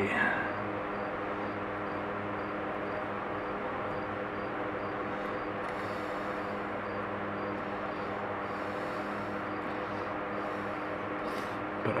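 Steady background hum made of several held low tones, unchanging throughout, with no distinct tool clicks or knocks.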